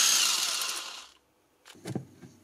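Parkside X20V Team cordless impact driver running, with a steady high motor whine, then fading out about a second in. Faint handling sounds follow near the end.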